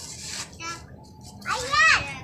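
A young child's high-pitched voice calling out loudly near the end, after a few faint vocal sounds.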